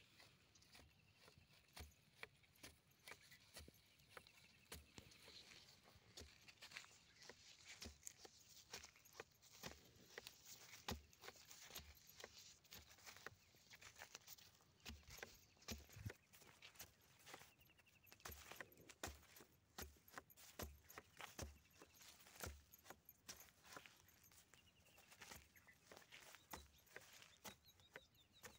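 Faint, irregular taps and scuffs from footsteps on dry, cracked soil and a hand-held tube fertilizer applicator being pushed into the ground beside maize plants.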